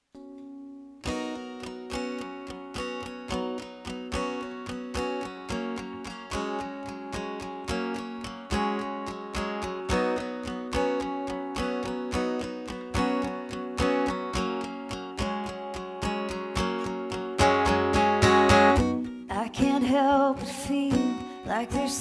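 Acoustic guitar playing a song's intro: evenly strummed chords that start about a second in and repeat at a steady pace, with a singing voice coming in near the end.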